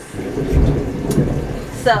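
A rolling rumble of thunder, loudest about half a second in.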